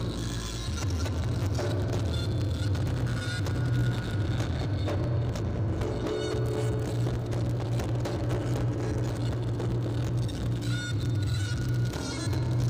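Reog Ponorogo gamelan music, loud and steady, with many quick percussive strikes over a heavy low rumble.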